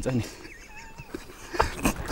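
A man's voice finishes a word, then a quiet lull with a faint, thin wavering high sound and soft breathy laughs near the end.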